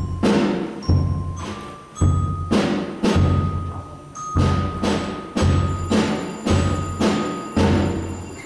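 School band percussion section playing a steady rhythm: a bass drum beat about once a second with drum strokes on top, and thin high ringing tones held between the hits.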